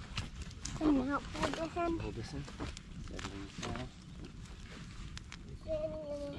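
Indistinct voices, a few short bits of talk or vocal sounds too unclear for words, over a steady low rumble.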